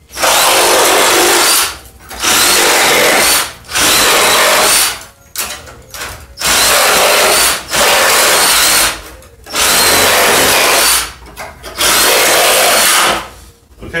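Reciprocating saw with a general-purpose demolition blade cutting through the nails that hold a wooden pallet's boards to its 2x4, in seven short runs of about a second each with brief pauses between. Each cut takes only about a second, the sign that the blade is going through nails and not through wood.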